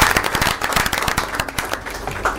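A small group of people applauding, the claps thinning out and fading away.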